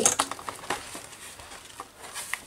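Paper journal being handled: soft rustling with a few light clicks and taps that die away.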